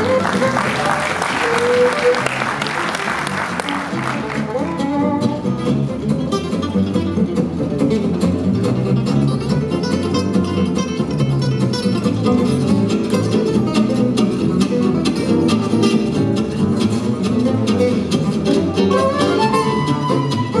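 Live gypsy jazz played on two Selmer-style acoustic guitars and a plucked upright double bass. There is a bright, noisy wash over the first four seconds.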